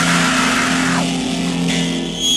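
Distorted electric guitars of a hardcore punk band holding one ringing chord, the noise thinning about a second in and the level slowly sinking.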